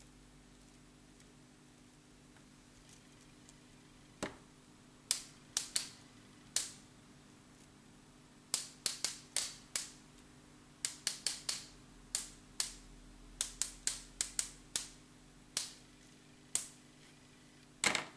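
Sharp, irregular taps, about two dozen, starting about four seconds in and coming in quick runs: a tool loaded with black ink being tapped to spatter ink drops onto the journal page.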